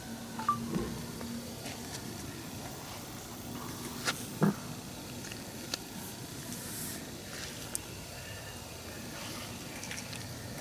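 Quiet background hiss with a few faint, short clicks and taps scattered through, and a faint low hum near the start.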